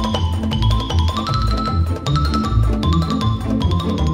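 Upbeat background music: quick struck notes in a mallet-percussion sound over a steady bass beat.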